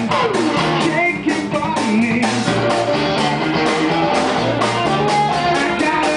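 Live blues-rock band playing: electric guitar with bending notes over drums, at a steady beat.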